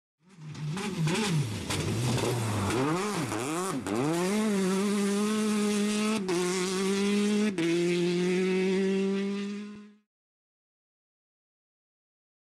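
Car engine revving in quick up-and-down blips, then pulling steadily and shifting up twice, before stopping.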